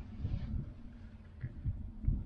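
Low, uneven wind rumble on the microphone, with a few soft bumps.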